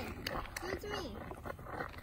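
Faint children's voices calling out briefly a few times, with a few light knocks in between.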